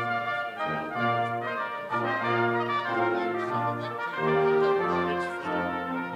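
Brass ensemble playing stately music in full sustained chords over a low bass line, the chords changing every second or so.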